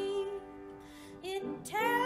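A hymn sung with musical accompaniment: held notes close a verse, the music drops to a brief quieter lull about halfway, and the next verse begins near the end with a note that slides up.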